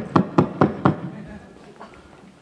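A person clapping hands in an even rhythm, about four claps a second, stopping about a second in.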